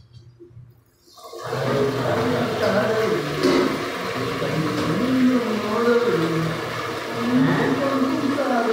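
People's voices over a steady rushing noise, both coming in suddenly about a second in after a near-quiet start.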